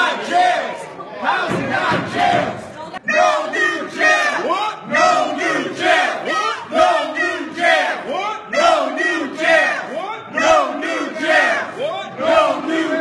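A group of protesters chanting slogans together. The shouting falls into a steady, rhythmic chant, with a brief break about three seconds in.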